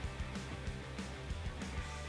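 Background music: a guitar-led track with a steady bass line and a regular beat.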